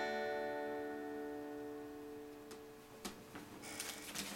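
Acoustic guitar's final strummed chord ringing out and slowly fading over about three seconds, ending the song. A few small knocks follow near the end.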